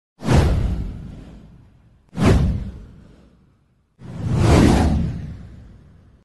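Three whoosh sound effects from an animated title intro, each a burst of rushing noise. The first two start suddenly and fade over about a second and a half; the third swells in more gradually and trails off near the end.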